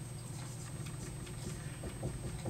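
Dry-erase marker writing on a whiteboard: a few faint ticks and strokes over a steady low hum.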